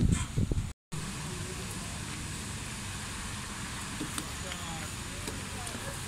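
Voices for the first moment, cut off by a brief dropout, then steady outdoor street-market background noise: a low rumble with a few faint clicks and faint distant voices.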